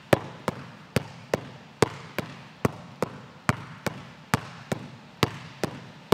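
Basketball dribbled hard and fast on a gym floor, a steady run of sharp bounces a little over two a second. This is a full-speed stationary pound-and-between-the-legs drill in a large gym.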